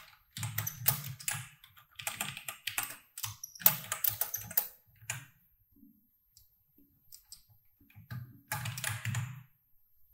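Typing on a computer keyboard: rapid bursts of keystrokes, each key a sharp click with a low thud beneath it. The typing pauses for a couple of seconds past the middle, leaving only a few scattered clicks, then picks up again in a short burst near the end.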